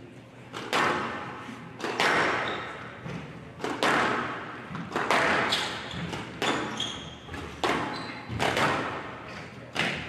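Squash rally on a glass court: a sharp, echoing crack of racket on ball and ball on wall about once a second, with a few short high squeaks in between.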